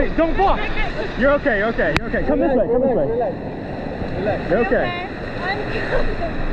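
River rapids rushing and splashing around an inflatable raft: a steady noisy wash of whitewater under loud, excited voices calling out. A single sharp click about two seconds in.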